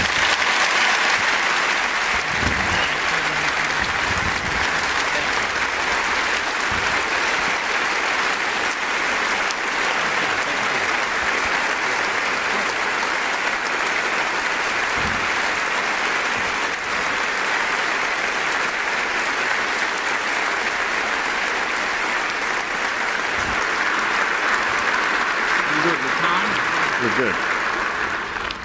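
A large audience applauding, a steady unbroken clapping that holds at one level for the whole time.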